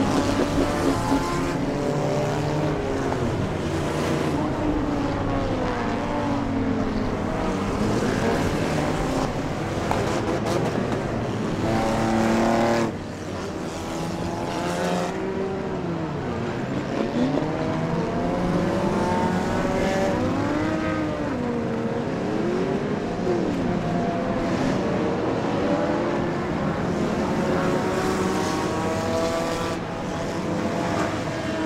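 A field of stock cars racing on an oval, many engines at once, their pitch rising and falling as they accelerate, lift and pass. The sound drops suddenly about 13 seconds in, then the racing engines carry on.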